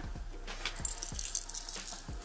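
A metal keychain with several clip hooks and an enamel Minnie Mouse charm jangling as it is handled, giving a few small clinks.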